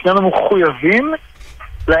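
A man's voice speaking, drawn out and swooping down and up in pitch, then a short pause before speech resumes near the end. The voice is thin and cut off in the treble, as over a telephone line.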